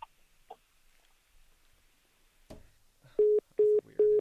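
Phone line's call-ended tone: three short, identical beeps at one pitch, evenly spaced, coming near the end after a quiet stretch with a single click.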